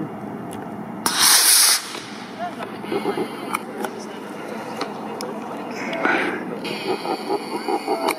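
Quest Antari model rocket lifting off on an A8-3 black-powder motor: a sudden loud rushing hiss about a second in that lasts under a second while the motor burns, then fades.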